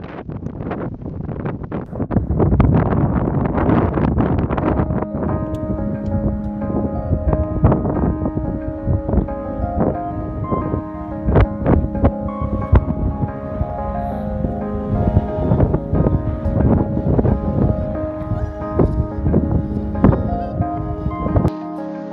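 Strong wind buffeting the microphone in gusts, with slow background music of held notes coming in about five seconds in. The wind noise cuts off suddenly just before the end while the music continues.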